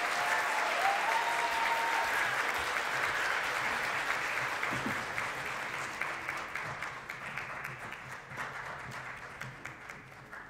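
Audience applause in an auditorium: many people clapping steadily, then dying away over the last few seconds.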